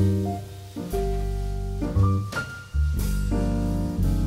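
Instrumental passage of a jazz ballad with no singing: piano chords struck every second or so, ringing on over sustained low notes.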